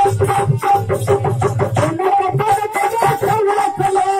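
Live Indian folk music: a harmonium holding a steady melody over fast hand-drum beats. The drumming is dense in the first half and thins out about halfway.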